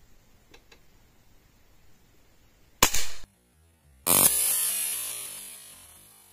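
Hatsan Vectis .22 (5.5 mm) PCP air rifle firing a single shot, a sharp crack about three seconds in. After a brief silent gap, a second, longer burst of the same kind of noise starts about a second later and fades away over about two seconds.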